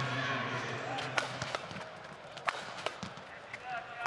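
Badminton rackets striking the shuttlecock during a doubles rally: a sharp hit about a second in, then two more in quick succession near the three-second mark, over steady arena background noise.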